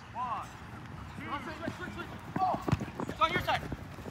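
Flag football players shouting and calling out to one another across the field. Several sharp thumps come between about two and a half and three and a half seconds in.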